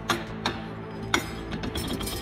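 Light metallic clinks, about four in two seconds, as a car lift's adjustable pad and its machined insert are fitted into the square steel tube of the lift arm, metal knocking against metal.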